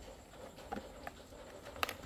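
Faint handling of a plastic vegetable cutter and its rubber non-slip base ring being fitted together, with a couple of light clicks, the clearest near the end.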